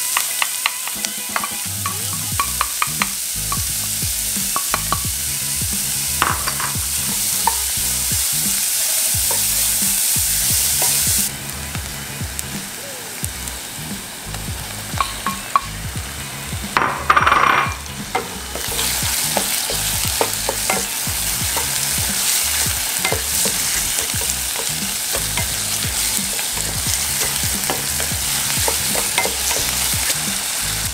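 Rice frying in oil in a pan, sizzling steadily while a wooden spoon stirs and scrapes it with small clicks. The sizzle drops about a third of the way in. Just past halfway comes a louder burst as raw squid pieces are tipped into the hot pan, and then the stirring goes on.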